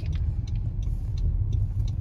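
Steady low rumble of a car moving, heard from inside the cabin.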